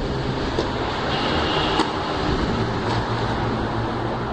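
Tennis ball struck by rackets during a rally on a clay court: three sharp pops about a second apart, the loudest near the middle. Underneath is a steady rumbling hum.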